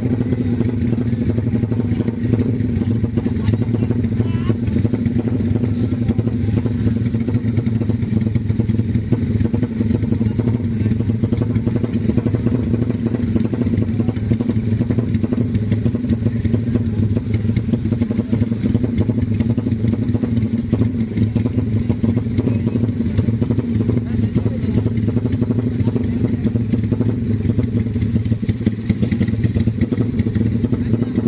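Modified drag-race motorcycle engine idling steadily, its pitch holding level without revs.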